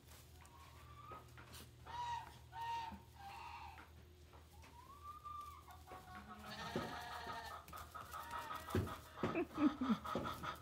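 Young goat kids bleating: several short, high calls in the first half, then a busier, louder run of overlapping bleats from about six seconds in.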